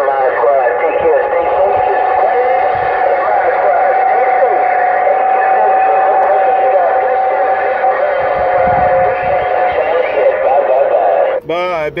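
Uniden Grant XL radio receiving on CB channel 6: a long-distance voice transmission comes through the speaker garbled and crowded, with no words made out. A steady whistle runs under it and stops about two seconds before the end.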